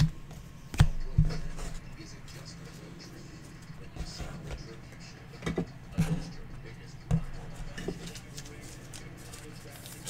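A few scattered light clicks and knocks over a steady low hum.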